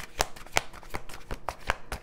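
A deck of tarot cards being shuffled by hand, a run of sharp, irregular card snaps, several a second.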